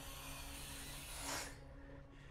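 A person snorting a drug deeply up the nose: one long, rasping inhale that grows stronger and stops about one and a half seconds in.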